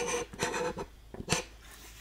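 Rifle bipod's cant joint ratcheting as it is tilted: short bursts of rasping clicks, rather loud.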